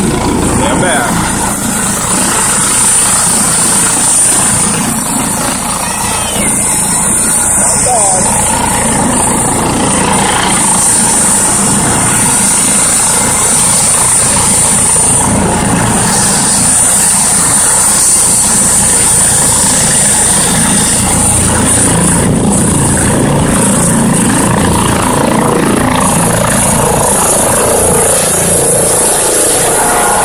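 Helicopter turbine engine and rotor running loud and steady with a high whine, as the helicopter sits on the ground and then lifts off in the latter half.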